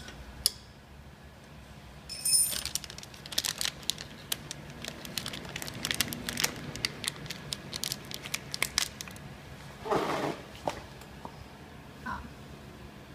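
Irregular small clicks and crinkling of plastic packaging film as hands work on a form-fill-seal packing machine's cutter blades, starting about two seconds in, with a brief louder rustle near the end.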